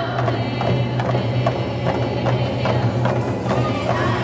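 Native American drum group's big drum beaten in a steady beat, about two to three strokes a second, with the singers' voices in and around it.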